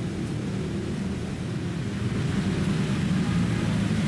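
A steady low drone of several held low tones, growing a little louder about two seconds in.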